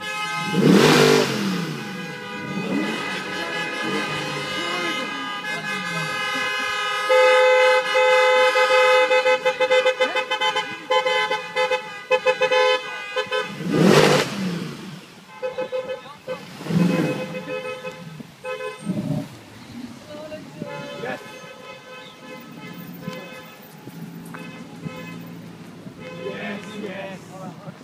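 Cars driving past in convoy with horns sounding: a loud engine rush past about a second in, a car horn held for several seconds from about seven seconds, another engine rush past around fourteen seconds, then shorter toots.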